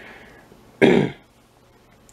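A man clearing his throat once, a short sharp burst about a second in.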